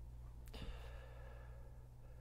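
A man's soft sigh, an outward breath starting about half a second in after a faint mouth click and fading over about a second, over a steady low electrical hum.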